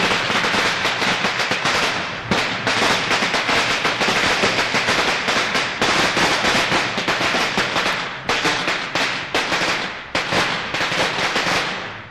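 A string of firecrackers going off in a rapid, continuous crackle of sharp bangs, with a few brief lulls.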